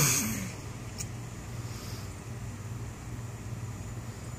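A steady low mechanical hum with a faint even hiss, broken by a single short click about a second in.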